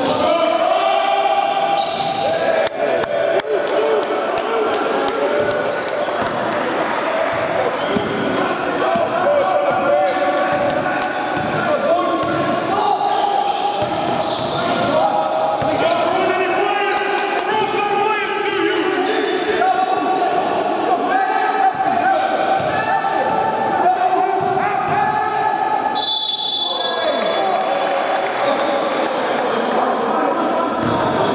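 A basketball game in a large sports hall: a ball being dribbled and bouncing on the wooden court, with players calling out. About 26 seconds in, a short high steady tone, a referee's whistle, stops play.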